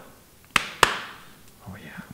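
Two sharp snaps about a third of a second apart, each ringing off briefly, as a leather golf glove is handled.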